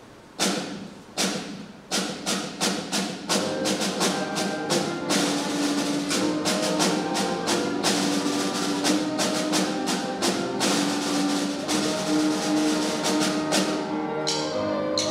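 Live trio of flute, grand piano and drum starting a piece. Sharp percussive strikes begin about half a second in and come faster. From about three seconds in, sustained piano and flute notes join over the continuing strikes.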